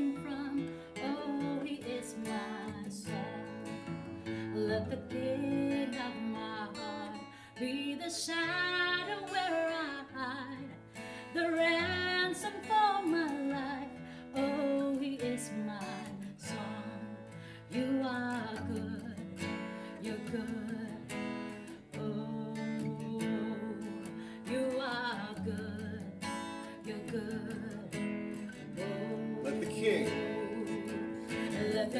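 Two acoustic guitars strummed while a small group of male and female voices sings a slow worship song together.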